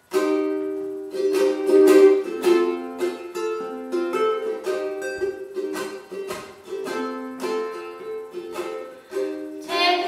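Ukulele strummed in a steady rhythm, playing chords as the instrumental opening of a song; a woman's singing voice comes in near the end.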